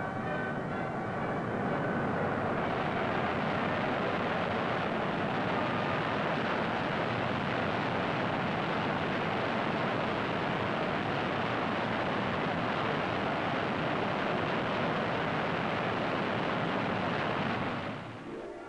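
Avro Arrow's Pratt & Whitney J75 turbojet on a ground run, its exhaust going into a steaming detuner: a loud, steady rushing noise that grows brighter about two and a half seconds in, holds level, and falls away near the end.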